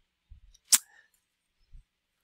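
A single sharp click about a third of the way in, with a few faint low thumps around it; otherwise quiet room tone.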